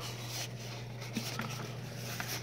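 Faint rustling and scraping of a small cardboard box being handled and its flap opened, with a couple of light ticks about a second in, over a steady low hum.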